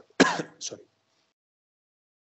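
A man clearing his throat once, a short rasp with a smaller catch after it, a fraction of a second in.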